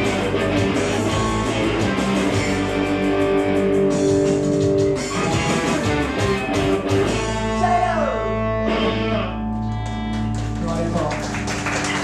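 Electric guitar played live through an amplifier: strummed chords, then from about seven seconds in a held chord rings out with a note sliding down in pitch.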